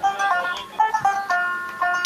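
Dotara, a long-necked plucked Baul lute, playing an instrumental melody of quick single notes with no singing, changing note several times a second.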